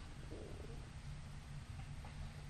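Quiet room tone in a pause in speech: a steady low hum with faint hiss.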